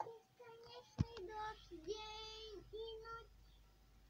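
A child's voice singing a song, holding long, drawn-out notes, heard as playback from a computer. A single sharp click sounds about a second in.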